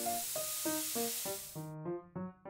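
Sand hissing as it slides across paper in a shaken plastic tray, cutting off suddenly near the end, under background music of short notes at about three a second.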